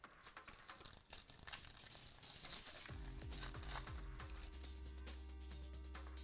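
A foil trading-card pack being torn open and crinkled, with a dense run of crackles for the first three seconds or so. Electronic background music plays throughout, and a deep bass comes in about three seconds in with a few falling notes before holding steady.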